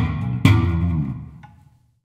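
1965 Fender Jazz Bass, electric, playing the last notes of a demo. A final note is plucked about half a second in and rings out, fading away over about a second.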